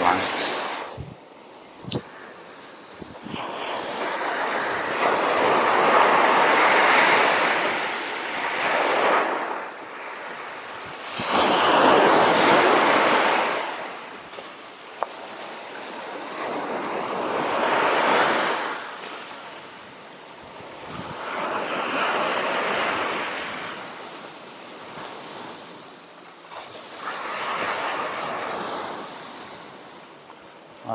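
Sea waves breaking on a sandy beach and washing back, swelling and fading about every five to six seconds.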